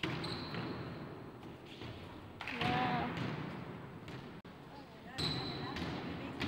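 Basketball bouncing on a hardwood gym floor as players dribble in a pickup game, with players' voices in the hall.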